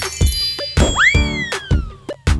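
Upbeat children's cartoon music with a steady beat. About a second in, a cartoon sound effect swoops up in pitch and then glides slowly down, after a brief high tinkling chime at the start.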